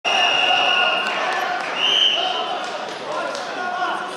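Referee's whistle blown twice to start the wrestling bout: a long blast of about a second, then a shorter, slightly higher one. Shouting voices carry on underneath.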